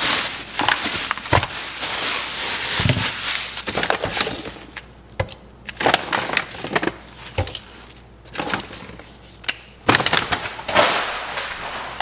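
A plastic grocery bag rustling and crinkling as items are pulled out of it, with knocks of packages and a plastic cup being set down on a stone countertop. The crinkling is densest for the first few seconds, then comes and goes, with a second burst near the end.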